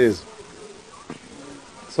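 A man's word trails off, then a pause of low background noise with a faint buzzing.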